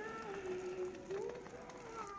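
A voice in long held notes that slowly rise and fall in pitch.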